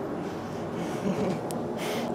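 Steady background room noise, with a short, sharp breath or gasp near the end.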